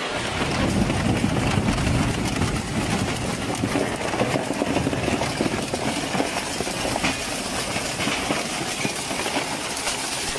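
Twin-shaft shredder's toothed cutters crushing and tearing a metal-framed plastic sign panel: a dense run of cracking and crunching plastic over the machine's grinding.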